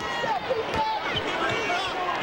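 Basketball game sound in an arena: sneakers squeaking on the hardwood court in short high squeals, a few thumps on the floor, over the murmur of the crowd.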